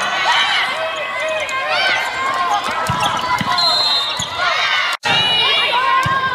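Sounds of an indoor volleyball rally: the ball struck a few times, with shoes on the hard court and players calling out. The sound cuts out for a moment about five seconds in.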